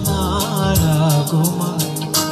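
A man singing a Tamil Christian worship song into a microphone, his melody rising and falling over a sustained bass and instrumental backing with a steady beat.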